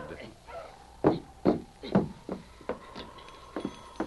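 Radio-drama sound effects of a man coming into a building: about six irregular knocks and thumps on wood, footsteps and a door, with a faint held tone in the second half.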